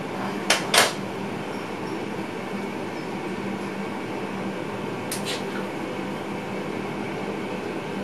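Steady running noise inside the driver's cab of an electric train moving slowly, with a low steady hum. Two pairs of short sharp clicks come through, one about half a second in and one about five seconds in.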